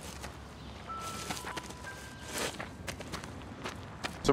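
Faint footsteps and shuffling in dry fallen leaves, scattered rustles with one fuller rustle a little past halfway.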